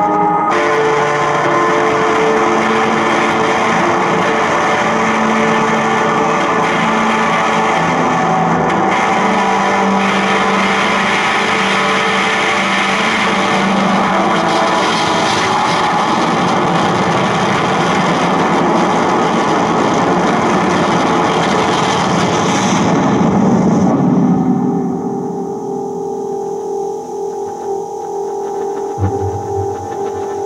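Improvised music for accordion, tuba and electronic noise. A dense, distorted noise wash runs over held accordion and tuba notes, then cuts away about 24 seconds in, leaving quieter sustained tones and some low notes near the end.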